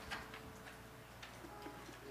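A quiet pause in a song played on acoustic guitar. A faint held note dies away at the start, then there are a few faint, scattered clicks.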